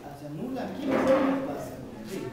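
Indistinct voices of several people talking in a small room, with a brief scraping noise about a second in that is the loudest moment.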